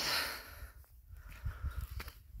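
A man's heavy breath out, hissing loudest at the start and fading within about half a second: panting from the effort of climbing a steep hill. A faint low rumble follows.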